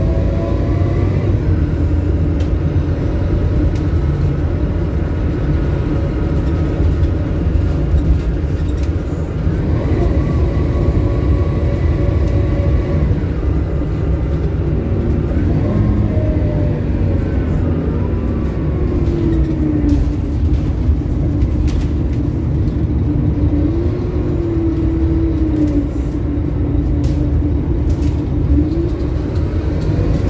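Scania K280UB city bus on the move, heard from inside its rear cabin. Its rear-mounted diesel engine and driveline keep up a steady rumble, with whining tones that glide up and down in pitch several times.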